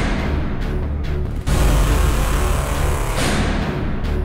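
Dramatic background score with a heavy low end, swelling anew about a second and a half in and again near the end.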